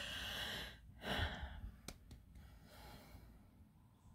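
A person breathing out audibly twice, like sighs, in the first second and a half, followed by a single small click about two seconds in.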